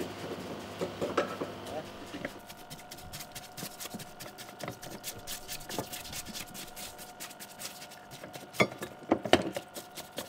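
A stiff brush scrubbing greasy motorcycle parts in a soapy parts-washer tub, a fast scratchy rasping with splashes of water. Near the end come a few sharp knocks of parts against the tub.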